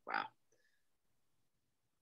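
A single short spoken "wow" from a man, then silence.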